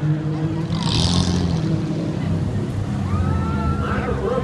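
Several stock car engines running on the oval as the cars circulate, a steady low drone, with a brief hiss about a second in.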